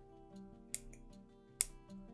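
Two sharp metallic clicks about a second apart, the second louder, as a 14-gauge jump ring is twisted closed between two pairs of Xuron pliers, under steady background music.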